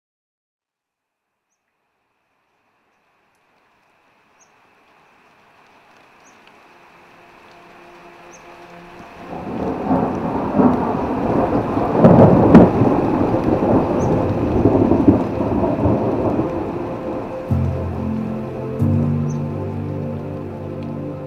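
Rain and rolling thunder, fading in from silence over the first several seconds. The biggest rumble comes about twelve seconds in. Steady low tones join near the end.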